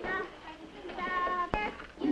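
Soundtrack of an old black-and-white classroom film played over the assembly's sound system: two short high-pitched calls, the second about a second in, and a sharp click just after it.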